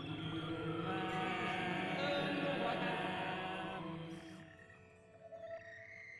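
Soft, calm background music of sustained, layered tones that fades down about four seconds in, leaving quieter music.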